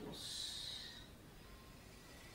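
A woman's soft audible exhale, a breathy hiss lasting about a second that fades away.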